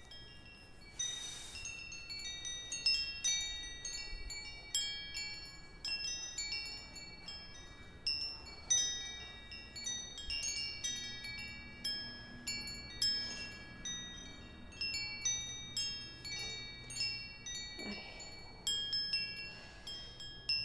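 Wind chimes ringing: many high, bell-like tones struck at irregular moments, overlapping and ringing on.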